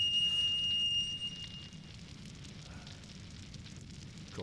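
Faint crackling and low rumble of a burning torch flame, under a thin, high, steady tone that fades out about two seconds in.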